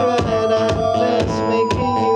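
Live electronic music: a steady beat of about two hits a second under held synthesizer tones, some of which slide in pitch.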